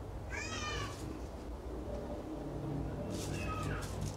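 A cat meowing twice: one short call near the start and another about three seconds later, over a low steady hum.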